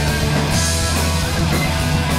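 Heavy metal band playing live: electric guitar, bass guitar and a drum kit with cymbals, in a dense, steady wall of sound.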